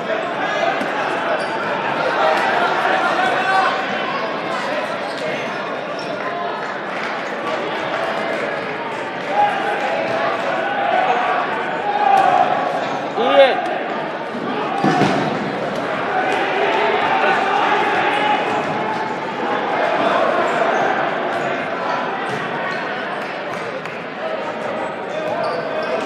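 Dodgeballs bouncing and smacking off the gym floor and players during a dodgeball game, under steady shouting and chatter from players and spectators in an echoing hall. One smack about thirteen seconds in is louder than the rest.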